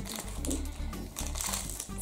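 Background music with a steady bass beat, over the crinkling of a small foil toy packet being opened by hand.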